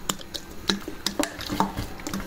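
A vinegar bottle being handled over a plastic tub of salted black olives: about five light, sharp clicks and taps spread over two seconds as it is readied for pouring.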